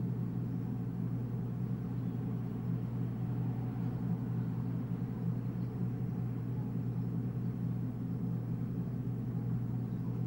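A steady low hum that holds the same level throughout, with no distinct events.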